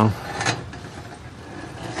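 A carbon steel wok being shifted and tilted on the grate of a portable gas stove: a brief metal scrape about half a second in, over a faint steady hiss.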